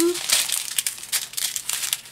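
Small clear plastic zip bags of diamond painting drills crinkling and rustling irregularly as they are handled and shuffled together.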